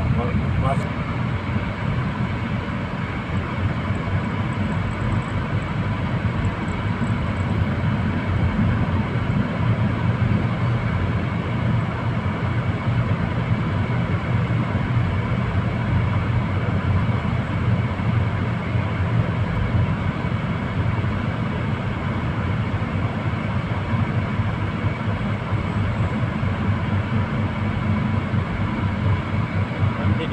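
Steady road and engine noise heard inside the cabin of a moving car: a constant low drone with tyre hiss and no sudden events.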